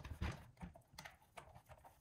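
A handful of faint plastic clicks and taps as hands handle a robot mop's brush-roller housing.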